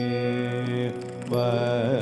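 Live Carnatic music: a singer holds one long note for about a second, then after a brief dip sings a phrase whose pitch slides up and down in ornaments.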